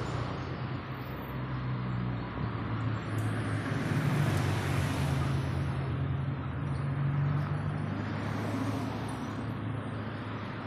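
Road traffic: motor vehicle engines with a steady low hum and tyre and road noise that swells about four seconds in and again around seven seconds as vehicles pass.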